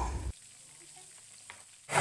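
Plain, unbattered tempe frying in oil in a wok, a faint steady sizzle.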